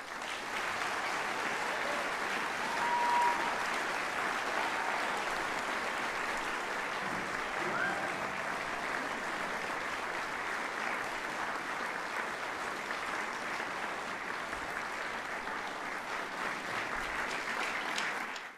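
Audience applauding steadily, right after the big band's closing brass chord.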